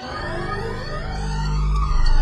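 Electronic instrumental music building up: a deep bass note swells in while synth tones sweep up and down, getting steadily louder.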